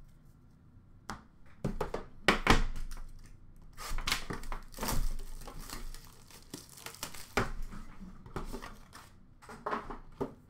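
Plastic shrink-wrap crinkling and tearing as it is stripped off a metal trading-card tin, with light knocks of the tin being handled. The crackling starts about a second in and comes in irregular bursts.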